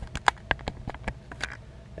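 A scatter of light clicks and taps, most of them in the first half second, from hands handling a freshly tied drop shot rig and tackle.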